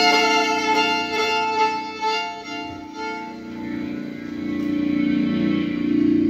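Improvised experimental music: a violin holds long sustained notes over a low held drone. The sound thins out about halfway through, then swells again near the end.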